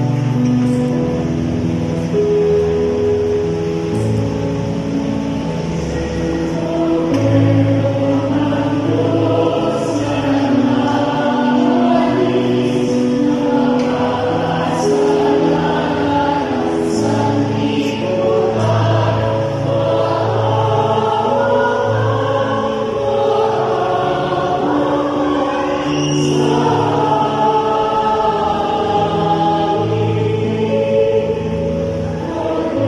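Mixed church choir singing a Mass song in harmony, with held notes, accompanied by an electronic keyboard.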